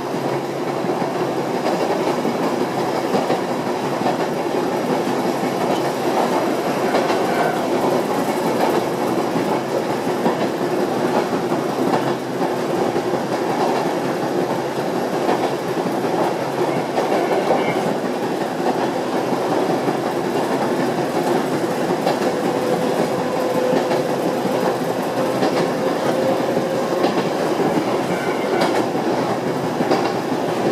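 Yoro Railway electric train running at steady speed, heard from inside the rear car: continuous wheel-on-rail rumble with intermittent clacks as the wheels cross rail joints, and a faint whine for a few seconds past the middle.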